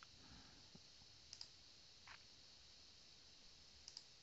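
Near silence with a few faint computer mouse clicks, a quick pair about a third of the way in and another pair just before the end.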